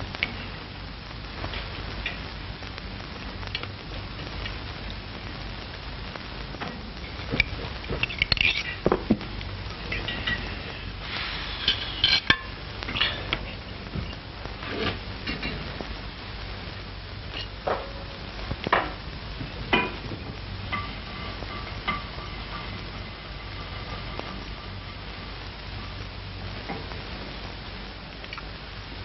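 Scattered clinks and knocks of dishes and cutlery, thickest in the middle stretch, over the steady hiss and low hum of an old film soundtrack.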